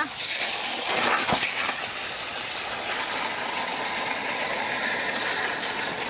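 Garden hose spray nozzle hissing as it sprays water onto ice cubes in a plastic tub. It starts abruptly, strongest in the first second and a half, then settles into a steady spray.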